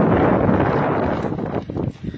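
Wind buffeting the microphone: loud, rough noise, heaviest in the low end, that eases off near the end, where a few short knocks come through.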